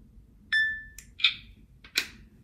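Hitachi Vulcan handheld LIBS alloy analyzer measuring a 316 stainless steel sample: a single electronic beep about half a second in, fading out within half a second, then a short rasping burst and a sharp click near the end.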